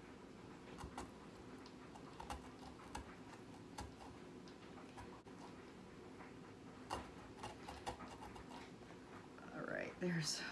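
Small serrated pumpkin-carving saw sawing into a raw turnip, heard as faint, irregular clicks and scratches.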